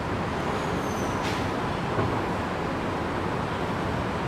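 Steady background noise, an even rumble and hiss with no speech, with a faint thin high whistle about a second in.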